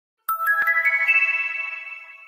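Focus-timer app's alarm chime as the countdown reaches zero: a quick run of about five bell-like notes climbing in pitch, starting a fraction of a second in, then ringing out and fading away.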